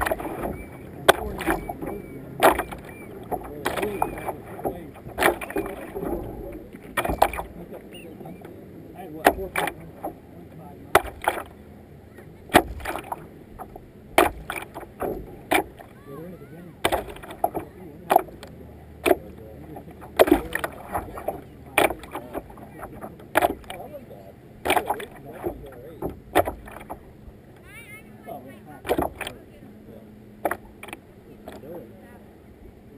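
Racing kayak paddle strokes, the blades catching and splashing in the water in a steady rhythm of about one and a half strokes a second.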